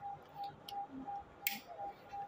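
A few light metallic clicks as a bobbin case is handled and fitted into a sewing machine's shuttle, over a faint steady ticking beep about four times a second.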